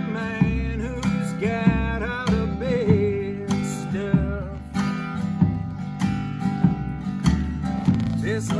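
A live acoustic band playing: a strummed acoustic guitar over upright double bass and a steady drum beat, with a held, gently bending melody line on top.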